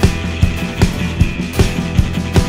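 Live rock band playing: a drum kit beats a steady, quick rhythm of about two and a half hits a second under sustained low notes and guitar.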